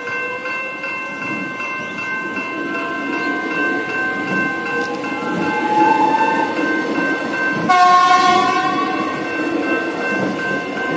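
A Melbourne Metro electric suburban train passes through a level crossing, its motors giving a whine that rises steadily in pitch, while the crossing's warning bells ring in an even, continuous pattern. About three quarters of the way in, the train sounds its horn in one blast of over a second, the loudest sound here.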